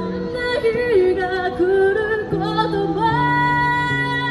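A woman singing live into a microphone, amplified through a portable street amplifier, over accompaniment with steady held low notes. She holds a long note near the end.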